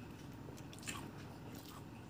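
Faint, close-miked chewing and mouth sounds of a man eating a mouthful of chicken biryani by hand, with a few short wet clicks, the sharpest just under a second in.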